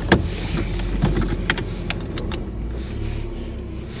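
Steady low hum inside a stationary car's cabin, with a scatter of sharp clicks and knocks of things being handled in the first couple of seconds.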